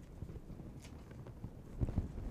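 Faint scissor snips and paper rustling as paper-backed HeatnBond fusible web is trimmed, with a soft thump near the end.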